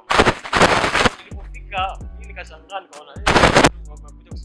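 Music with deep sustained bass notes and a wavering singing voice, broken by two loud bursts of noise: one about a second long at the start and a shorter one past the three-second mark.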